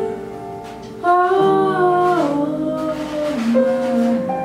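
Female jazz vocalist singing a slow phrase over piano accompaniment. A held piano chord comes first, then the voice enters about a second in with long held notes that step downward.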